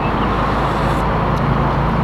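A motor vehicle's engine running, a steady low hum over an even rumble.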